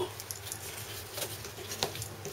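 Rustling and crinkling of paper and cardboard packaging handled by hand, with irregular small clicks and taps, one sharper click about two seconds in. A steady low hum runs underneath.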